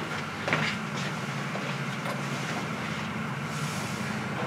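Steady low hum of room noise in a quiet meeting room, with one brief knock about half a second in and a short hiss near the end.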